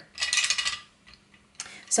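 Wooden coloured pencils clinking and rattling against one another as a hand sorts through a pile and picks one out: a cluster of clicks in the first second and a brief one near the end.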